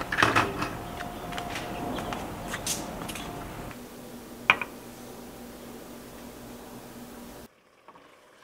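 Light kitchen handling sounds: scattered small clicks and knocks over a faint steady hum, with one sharp clink about four and a half seconds in. The sound drops away to near silence just before the end.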